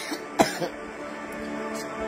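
A person's short, sharp cough about half a second in, over soft, sustained background music.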